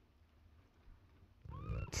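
A short cat mew rising in pitch about a second and a half in, after a quiet stretch.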